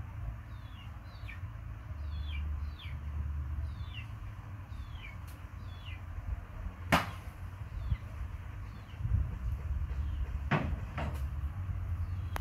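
A small bird chirping a quick series of short falling notes, often in pairs, over a low steady rumble. A sharp click comes about seven seconds in, and two more clicks near the end.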